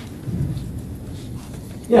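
Low, even rumble of room noise in a pause between a man's spoken sentences, with his voice coming back right at the end.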